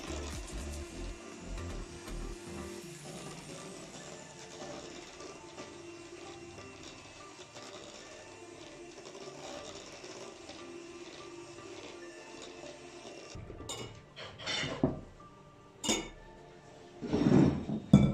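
Electric hand mixer running steadily as its beaters whip chilled evaporated milk and gelatin into foam, under background music. About 13 seconds in the whirring stops, and a few short clinks and knocks of a metal pot and utensils follow.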